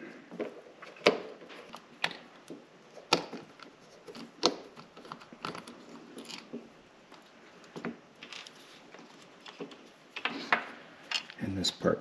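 Precision screwdriver working small screws out of a Kenwood TH-D75A handheld radio's casing: scattered sharp clicks and light taps, irregularly spaced.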